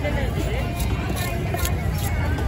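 Busy fish-market background of a steady low rumble and people talking. About a second in come two short sharp knocks, a large fish knife striking through a seabass onto a wooden chopping block.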